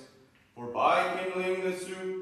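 A man chanting an Orthodox liturgical text on one held pitch, pausing briefly near the start before carrying on.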